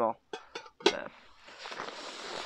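Camping cooking gear being handled: a short sharp clack a little under a second in, then a soft rustling hiss.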